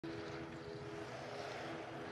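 Faint, steady background noise of an ice arena, a low hum and hiss with a few faint held tones that fade out about two-thirds of the way through.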